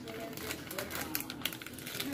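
A quick, irregular run of light clicks and crackles from chocolate being broken up by hand over a glass bowl of brownie batter, growing busier toward the end.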